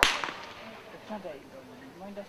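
A single blank pistol shot: a sharp, loud crack with a short echo, fired during heeling to test the dog's steadiness to gunfire.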